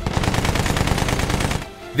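Machine-gun fire sound effect: one rapid, even burst of shots that stops about a second and a half in.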